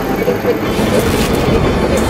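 Loud, steady rumbling noise from a film trailer's soundtrack, train-like in character.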